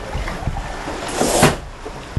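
Wind and water noise aboard a sailing catamaran under sail, with one brief louder rush just past a second in.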